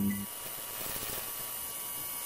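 Steady electrical hum with a hiss over it, the buzz of a neon-sign sound effect, just after the tail of a final music hit fades out at the very start.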